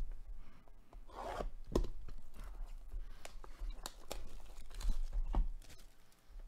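Plastic wrap on a sealed trading-card box being torn and crinkled, with scattered light clicks and taps as the cardboard box is handled.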